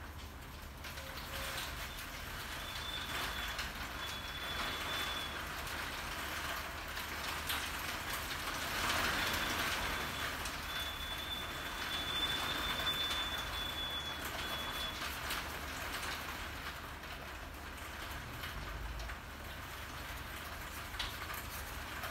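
Steady rain falling, an even hiss that swells a little in the middle, with a thin high whistle of wind coming and going twice.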